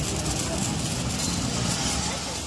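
Ground fountain firework spraying sparks with a steady hiss.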